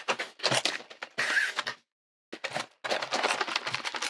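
Tape and thin cardboard packaging being pulled and torn open by hand: crackly tearing and rustling in short bursts, with a brief pause around the middle.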